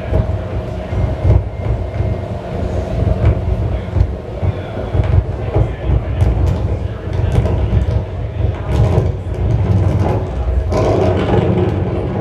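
Live electronic noise music played from a tabletop electronics setup: a loud, dense, pulsing low rumble scattered with sharp clicks and crackles, over a faint steady tone.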